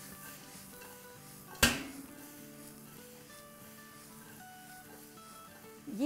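Quiet background music with soft held notes, and one sharp metallic clank about one and a half seconds in as the wok knocks against the stove grate while being tossed.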